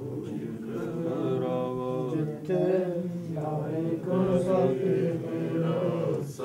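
Voices chanting a Sikh devotional hymn in long, wavering held notes, in phrases a second or two long.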